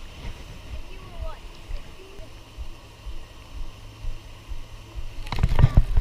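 Rumbling handling and wind noise on a body-worn camera's microphone while a baitcasting rod is worked, with a steady low hum from about two seconds in. Near the end comes a cluster of heavy thumps as a fish strikes and the rod is jerked up to set the hook.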